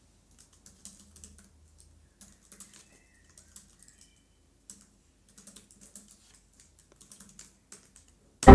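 Faint typing on a computer keyboard: irregular, quick key clicks.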